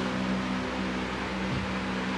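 Steady low hum of several held tones over a faint even hiss: constant room background noise in a pause between spoken sentences.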